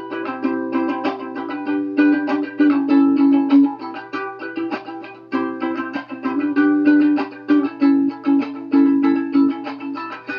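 Ukulele strummed in a steady rhythm, playing the instrumental intro of a song with the chords changing every second or two.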